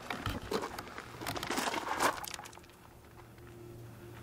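A few light clicks and knocks, the sharpest about two seconds in, over a faint steady low hum.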